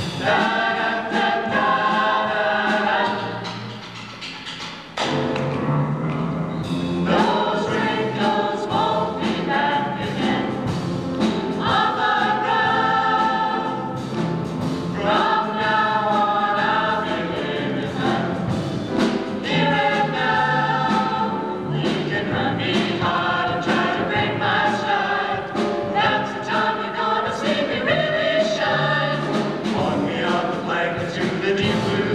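A mixed vocal ensemble singing in close harmony. The singing dips quieter for a moment about four seconds in, then comes back in at full strength.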